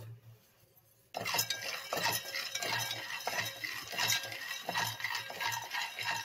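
Raw peanuts rattling and scraping around an aluminium pan as a wooden spatula stirs them for roasting: a dense, uneven run of small clicks that starts about a second in.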